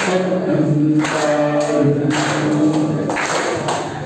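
Unaccompanied singing through a microphone and PA, the voice holding long notes phrase by phrase.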